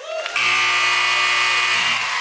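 A loud steady buzzer sounds for about a second and a half, the time-up signal as the on-screen countdown reaches zero, cutting off near the end. Audience applause and cheering start under it and carry on.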